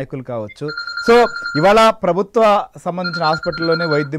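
An electronic phone ring sounds twice, a steady high tone about a second long each time, over men talking.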